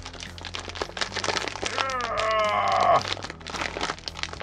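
Stiff plastic candy packaging crinkling and crackling as it is torn open by hand. About two seconds in, a loud drawn-out voice-like cry lasts about a second.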